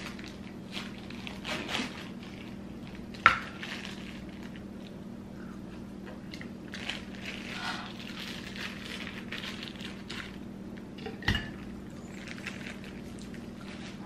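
Frozen fruit pieces tipped from a plastic bag into a blender jar: bag rustling and crinkling, with pieces knocking against the jar, the sharpest knock about three seconds in and another near eleven seconds.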